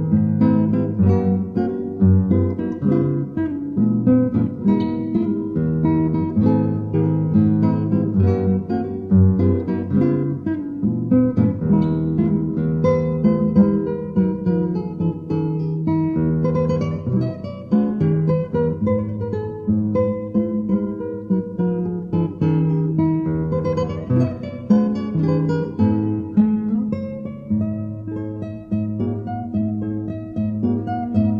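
Acoustic guitar playing a piece: a steady, unbroken run of plucked notes over lower bass notes.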